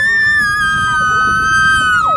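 Two children squealing together in one long, high-pitched held note, two steady pitches at once.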